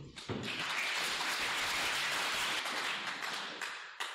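A room of people clapping: the applause swells in a moment after the start, holds steady for about three seconds, then dies away near the end.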